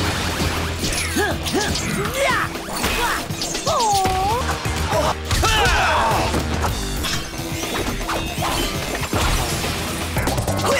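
Cartoon fight-scene soundtrack: action music under repeated punches, crashes and smash sound effects, with scattered short sliding-pitch cries and effects.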